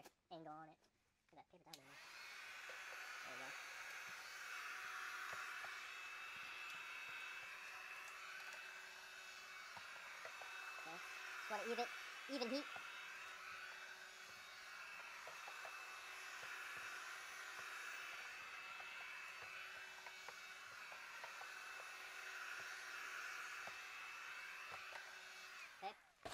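Electric heat gun switched on about two seconds in and blowing steadily, with a slow waver in its hiss. It is softening the old adhesive on a tail light housing's rim so the lens can be pressed back on.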